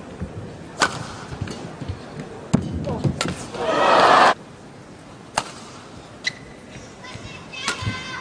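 Badminton rally in an arena: sharp cracks of rackets striking the shuttlecock every second or two. A loud, brief burst of crowd cheering comes about halfway through.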